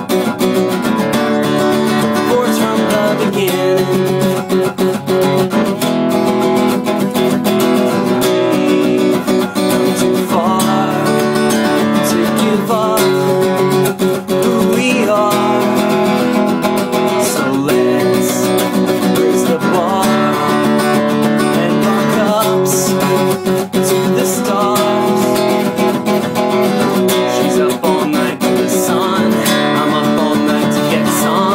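Acoustic guitar strummed in a quick, steady syncopated pattern at about 116 beats per minute. It cycles through the chords B minor barre, open D, F-sharp minor barre and open E, with the chord changing about every two seconds.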